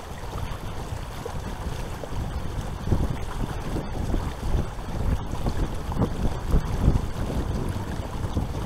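Wind buffeting an action camera's microphone on a kayak on open, choppy water, a low rumble that comes in gusts and is strongest around the middle and near the end.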